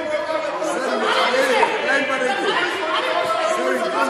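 Many voices talking over one another at once in a large, echoing chamber: a hubbub of members speaking up together in a parliamentary house.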